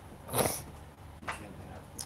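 A man's brief intake of breath about a third of a second in, with a fainter one a little past the middle.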